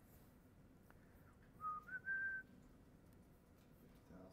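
A person whistling a short rising phrase of two or three clear notes, lasting under a second, about a second and a half in; otherwise faint room tone.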